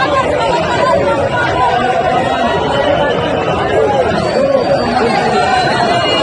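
A dense crowd's many voices talking and calling out at once, close around the microphone.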